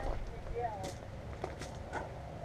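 A man's faint murmurs and a few short lip smacks as he tastes food off his fingers, over a low steady rumble.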